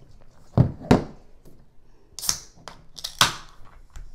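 Two dull thumps, then a Pepsi being popped open: a short, sharp fizzing hiss about two seconds in, and a second short sharp hiss about a second later.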